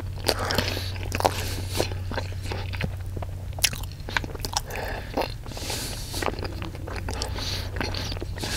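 A person biting, crunching and chewing food close to the microphone, with irregular crisp crunches and wet mouth sounds. A steady low hum runs underneath.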